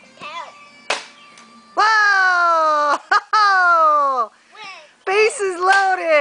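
A sharp knock about a second in, then a child's voice in two long drawn-out cries that fall in pitch, followed by more high-pitched shouting near the end.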